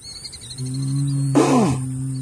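Holstein bull's low, drawn-out bellow, held steady for about two seconds, with a shorter, louder call that falls in pitch breaking in near the middle.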